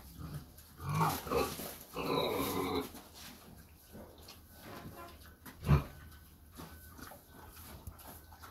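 Mangalița pig rooting in straw, with rustling and small ticks throughout and two louder grunting calls about one and two seconds in. A single sharp thump, the loudest sound, comes past the middle.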